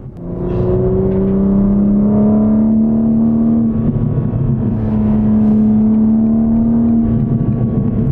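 BMW M4 CSL's twin-turbo inline-six engine heard from inside the cabin while driving, rising slightly in revs over the first couple of seconds and then running steadily at cruise.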